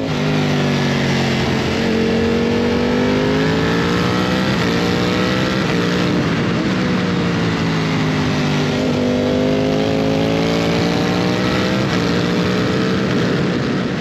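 Ducati Panigale V4 SP2's 1,103 cc Desmosedici Stradale V4 engine running while riding along a road, loud and steady. Its pitch falls and climbs gently several times, with a few brief breaks.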